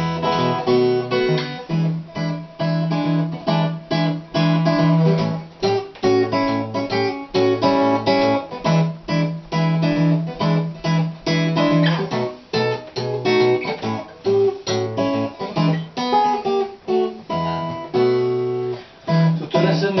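Steel-string acoustic guitar playing a blues instrumental break: strummed and picked chords over a repeating bass note, in a steady rhythm.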